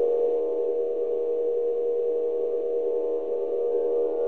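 Electronic ambient drone from Sonic Pi: an ambient sample played backwards at slowed speed, sustaining a steady chord of held tones with no drums or beat.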